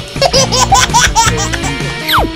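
Giggling laughter in a quick run of short rising-and-falling bursts, over background music.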